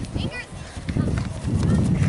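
Outdoor sideline sound at a youth soccer game: uneven wind rumble on the microphone, with a short high-pitched shout near the start and faint distant voices.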